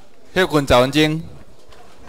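A man's voice speaking a short phrase of a few syllables, starting about a third of a second in and lasting under a second, over steady room noise.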